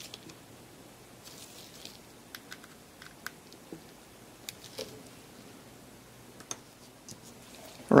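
Faint, scattered small clicks and taps of small metal and plastic parts being handled on a camera's mode-dial assembly as its small retaining screw is tightened by gloved hands.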